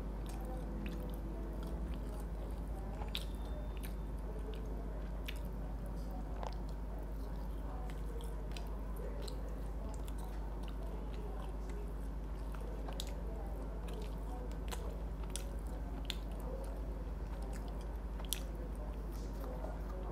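A person chewing a piece of KFC Golden Butter Cereal fried chicken close to a clip-on microphone: soft, scattered crunches and clicks from the mouth and fingers, over a steady low hum.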